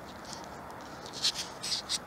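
Leather-gloved hands handling a small toy car: a few faint, short scratchy rustles, mostly in the second half, over a low background hiss.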